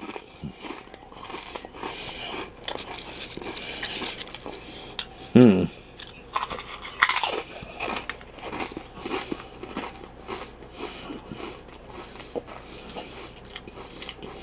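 A person biting and chewing wavy Pringles crisps close to the microphone, a continuous run of crunching and crackling. There is a short hum of the voice about five seconds in.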